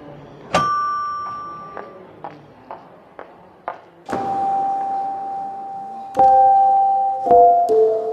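A single bright bell-like chime rings out about half a second in, followed by a few light knocks. From about four seconds in come long held keyboard-like notes, which change pitch near six and seven seconds, as notes are sounded from a giant step-on floor piano.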